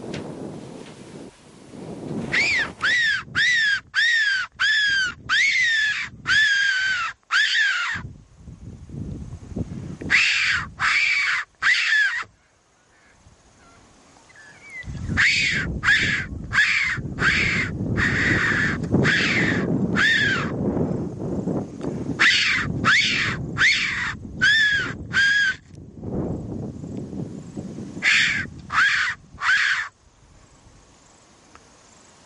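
Mouth-blown fox whistle, a predator call, sounding in five groups of short, high squeals at about two a second, each rising then falling in pitch. It imitates a rabbit in distress to draw a fox in. A low rushing noise runs under the squeals through the middle stretch.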